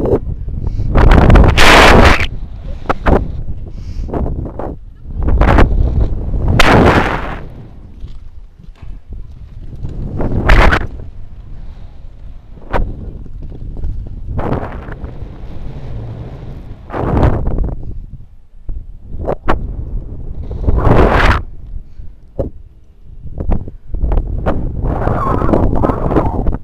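Wind rushing over an action camera's microphone in loud, irregular gusts, several seconds apart, as a rope jumper swings on the rope beneath a bridge.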